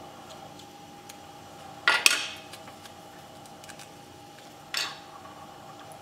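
Two short handling noises from fly-tying tools and materials at the bench, a louder one about two seconds in and a smaller one near five seconds, over a faint steady hum.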